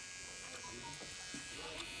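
Electric hair clippers running with a faint, steady buzz while cutting a boy's hair.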